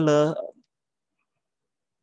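A man's voice trailing off in a hesitant 'uh', then about a second and a half of silence.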